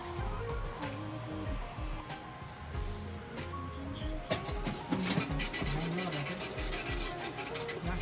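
Background music with a steady beat and a stepped melody line. From about halfway through, a dense crinkling rustle joins it.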